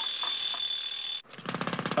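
An alarm clock ringing with a steady high tone, which cuts off about a second in. Straight after, a pneumatic road drill starts hammering rapidly into paving, louder than the clock.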